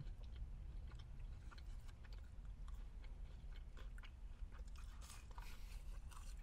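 Close chewing of fried chicken nuggets, with small scattered crunches, over a steady low hum.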